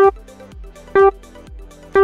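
Race-start countdown beeps: short electronic beeps, all at the same pitch, one each second, counting down to the start of a race.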